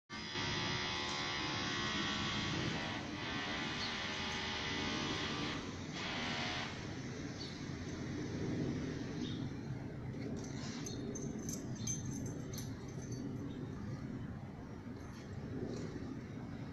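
A steady buzzing drone, like a small motor, for the first seven seconds or so, dipping briefly twice before it drops away. It leaves a low, even background rumble with a few light clicks near the middle.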